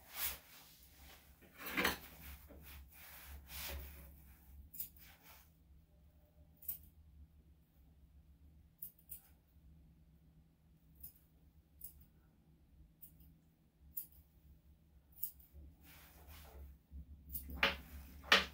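Small grooming scissors snipping the hair on a dog's paw: a scattering of short, sharp snips with pauses between them, after a few seconds of rustling.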